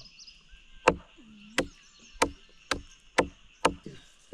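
A heavy knife chopping raw meat on a wooden plank: six sharp chops about half a second apart.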